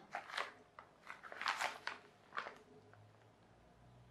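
Plastic postal mailing bags crinkling and crackling as they are handled and picked up, in a series of short irregular crackles, the loudest about one and a half seconds in.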